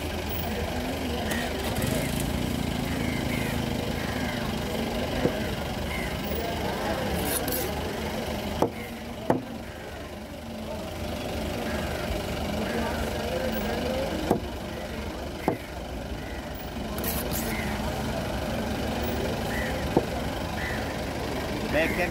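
Large knife chopping through yellowfin tuna onto a wooden block: sharp single knocks every few seconds, about seven in all, over background chatter and a steady low engine rumble.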